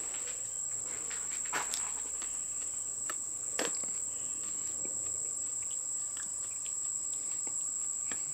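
A steady high-pitched insect trill runs throughout, with a few faint short crunches as a crisp chilli pepper pod is bitten and chewed, about one and a half and three and a half seconds in.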